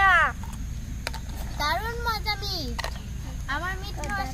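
Young children's high-pitched voices, talking and exclaiming in short bursts, with a few faint clicks and a steady low hum underneath.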